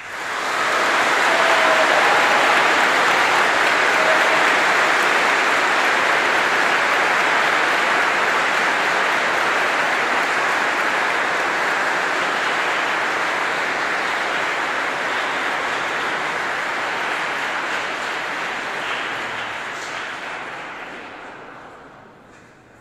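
A large crowd applauding in a big church, swelling within the first second or two, holding steady, then dying away over the last few seconds.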